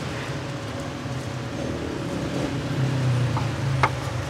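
Steady low rumble of street traffic that swells a little in the last second, with a sharp click just before the end.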